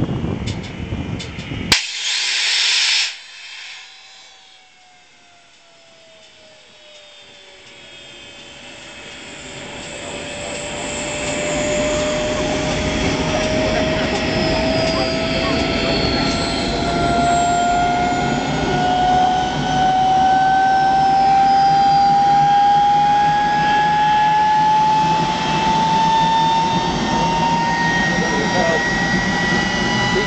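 Armstrong Whitworth-built Sea Hawk's Rolls-Royce Nene turbojet starting up. About two seconds in there is a sharp crack and a loud hiss. The engine then lights and spools up: its whine dips, then climbs slowly and steadily in pitch while the jet noise builds to a loud, steady level.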